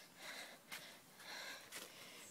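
Faint breaths close to the microphone, with one light click about three-quarters of a second in.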